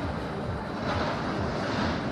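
Open-air funfair ambience: a steady wash of background noise from the fairground, with uneven low rumbling of wind on the microphone.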